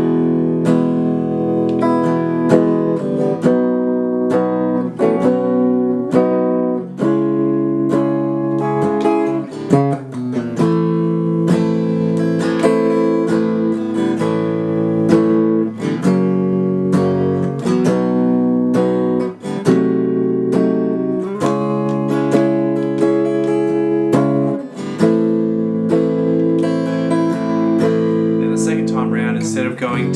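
Gibson electric guitar played slowly through a chord progression, each chord strummed and left to ring, changing every second or two.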